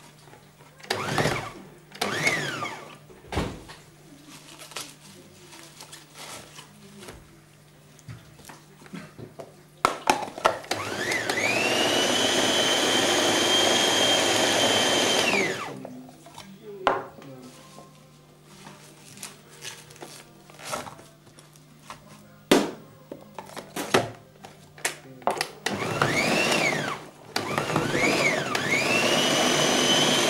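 Small electric blender chopping kale leaves: two brief pulses about a second in, a run of about five seconds in the middle whose whine climbs as the motor speeds up, holds, and drops as it stops, then two more short runs near the end. Knocks and clatter of the jar and leaves being handled between the runs.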